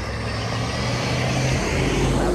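A car driving past on the road, a steady rush of engine and tyre noise that builds slightly as it draws near.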